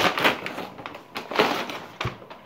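Christmas wrapping paper crinkling and rustling as a gift is handled and unwrapped by hand, in two brief louder bursts: one at the start and one a little over a second in.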